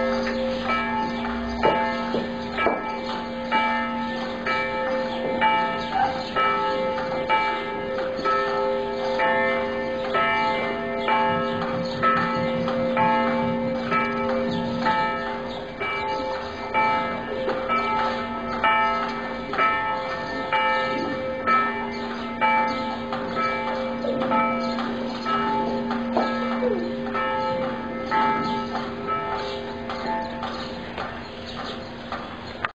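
Church tower bells ringing the noon peal: several swinging bells striking over and over, their ringing tones overlapping in an uneven, continuous pattern.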